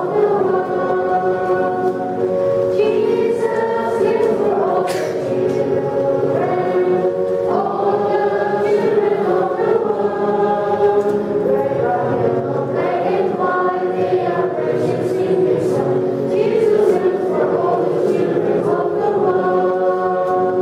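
Congregation singing a hymn together in unison, with slow, sustained notes.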